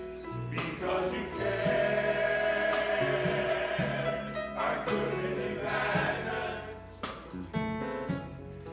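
Men's gospel choir singing long held notes, backed by organ, piano and drums, with cymbal and drum hits every second or so.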